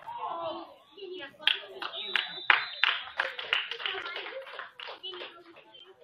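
Hands clapping in a quick, uneven series of sharp claps, a few a second, for about four seconds, with voices around them.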